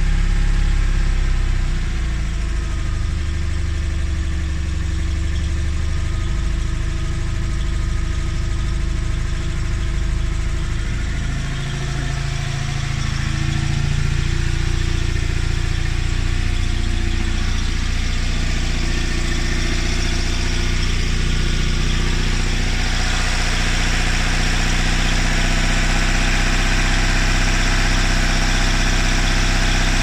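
Invacar Model 70's air-cooled Steyr-Puch flat-twin engine idling steadily while warming up after a cold start, with the choke just turned off. The sound is heard from the cabin at first; from about two-thirds of the way through it turns brighter, with more hiss and mechanical clatter.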